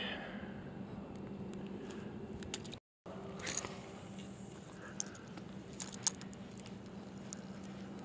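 Quiet outdoor ambience with a steady faint low hum, then a brief soft swish and a few small sharp clicks from a spinning rod and reel being handled and cast.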